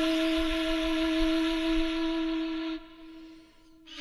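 Background music: a flute holding one long steady note, which ends a little under three seconds in, followed by a short quiet gap before the next note starts.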